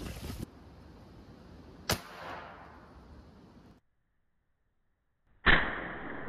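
Two shots from a .50 caliber big-bore air rifle firing a AAA battery. About two seconds in there is a sharp crack with a fading tail. After a sudden gap, a louder, duller bang near the end fades out slowly. Wind buffets the microphone at the start.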